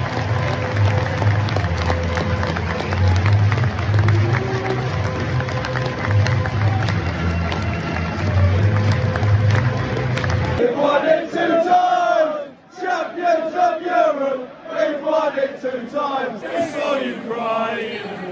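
Football stadium crowd noise over PA music with a heavy pulsing bass beat; about ten seconds in the music stops and the crowd is heard singing and chanting in rising and falling voices.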